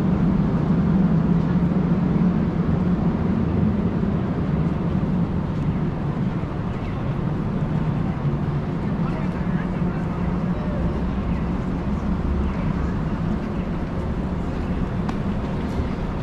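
Steady city street ambience: a continuous low rumble of traffic and city hum, with indistinct voices of passers-by, easing a little toward the end.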